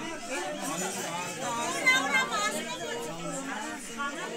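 Several people talking at once in overlapping chatter, a few voices louder around the middle.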